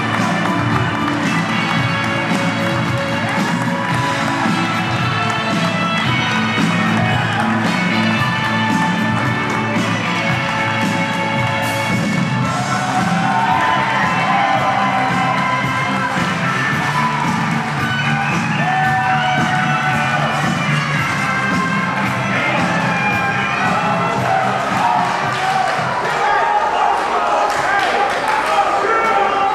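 Wrestler's entrance music with a steady beat playing over an arena sound system, with a crowd cheering. The bass drops away near the end.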